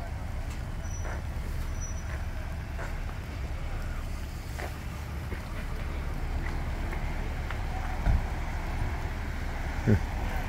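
Steady low rumble of idling vehicles and street traffic, with a short thump about eight seconds in.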